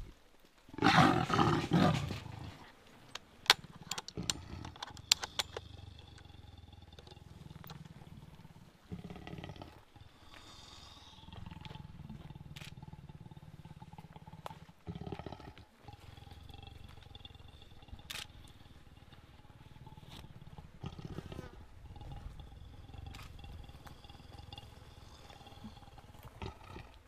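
Caged male Cape leopard giving a loud growl about a second in, followed by a few short sharp sounds over the next few seconds.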